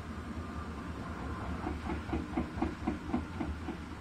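Bosch Serie 8 front-loading washing machine in its rinse, the drum turning through water with a steady hum and hiss. From about a second and a half in comes a rhythmic pulsing, about four beats a second.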